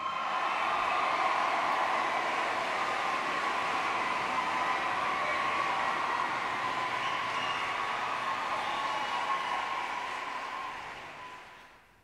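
A steady rushing noise with a faint high hum, fading out over the last couple of seconds.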